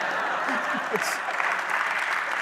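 Live audience applauding and laughing: a steady wash of clapping with scattered laughing voices over it.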